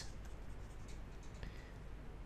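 Faint scratching of a pen writing, over low room hiss.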